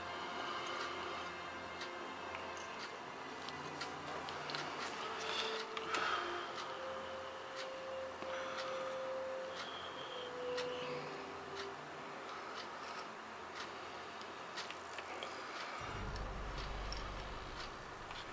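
Quiet hand work at a soldering bench: scattered faint ticks and small clicks as a thin wire is soldered onto a small brass hinge, over faint background music. A low rumble comes in near the end.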